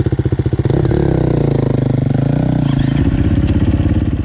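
Single-cylinder four-stroke KTM dirt bike engine chugging at low revs with evenly spaced firing pulses. About a second in it is opened up, its pitch rising and then falling, before it drops back to a low chug near the end.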